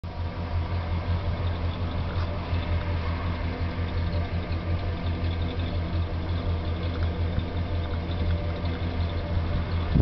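1992 Ford E-150 van's engine idling, heard from inside the cabin as a steady low hum.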